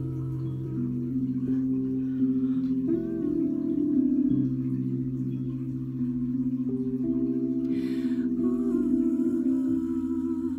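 Slow, held keyboard chords. A woman's soft, wordless humming wavers over them about three seconds in and again near the end.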